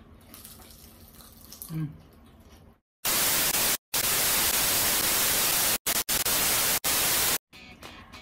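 Loud, even static hiss that starts suddenly about three seconds in, cuts out abruptly for brief moments several times, and stops sharply a little after seven seconds. Before it there is only faint room tone.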